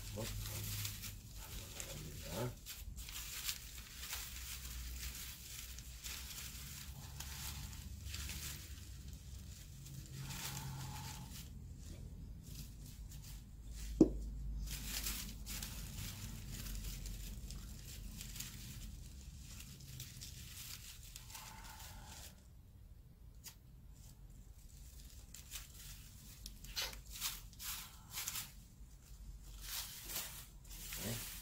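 White cut paper rustling and crinkling as fringed paper strips are rolled tightly around a paper-wrapped staff, building up the body of a shaman's sinjangdae. One sharp tap stands out about halfway through, and the rustling eases off briefly past the two-thirds mark.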